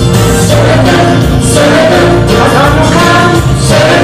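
A song sung by a group of voices over instrumental accompaniment, with the melody rising and falling steadily.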